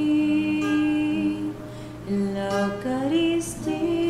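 A slow hymn sung by a single voice, with long held notes that step from one pitch to the next, as at communion in Mass.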